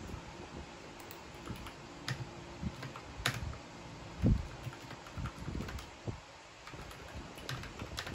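Typing on a Vissles V84 wireless mechanical keyboard: an uneven run of key clicks, with one louder, deeper knock about four seconds in.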